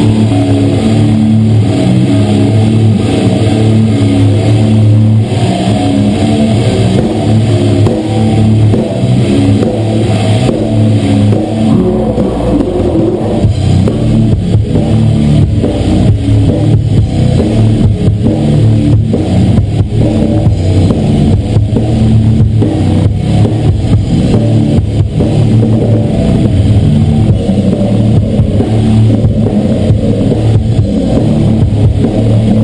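Grindcore band playing live at full volume: heavily distorted electric guitar and bass riffing over fast, dense drumming, with the drum hits growing busier about twelve seconds in.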